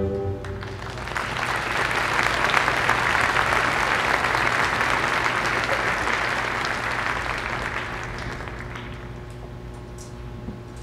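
A children's choir's final sung note cuts off right at the start, then an audience applauds: the clapping builds about a second in and fades away near the end.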